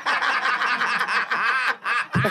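Several people laughing at once, high-pitched and overlapping, dying down just before the end.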